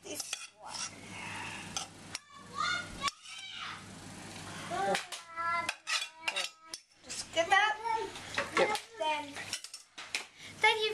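Cutlery and china plates clinking and scraping as food is served onto a dinner plate and dishes are handled: a string of short clatters and clinks, some ringing briefly.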